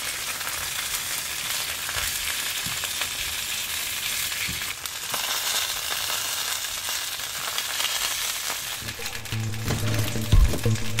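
Sausages sizzling in a frying pan: a steady, dense hiss with scattered crackles.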